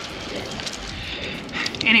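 Bicycle tyres rolling over dry fallen leaves on a path: a steady rustling hiss with faint crackles.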